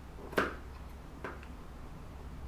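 Scissors snipping twice through a bed sheet, about a second apart, the first snip louder: trimming a spot that the rotary cutter did not cut all the way through.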